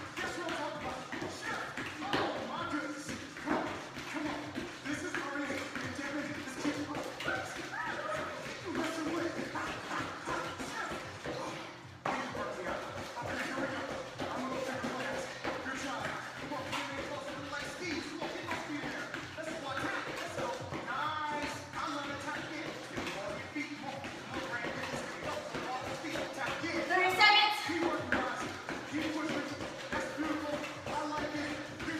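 Workout music with indistinct voices over it, and sneakers landing in time with jumping jacks. Near the end, one louder voice briefly rises and falls.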